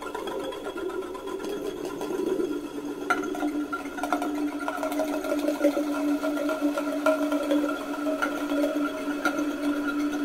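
Experimental noise music made from processed recordings of found instruments: a sustained drone of a few steady tones with scattered clicks, and a higher tone joining about three to four seconds in.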